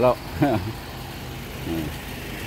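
A van's engine idling close by: a steady low hum.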